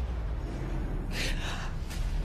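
A woman's sharp, breathy gasp a little over a second in, lasting under a second, over a steady low rumble.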